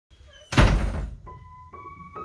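A loud thump about half a second in, then two single notes played on a Boardman & Gray upright piano, the second a step higher than the first. The owner says the piano needs a little tuning.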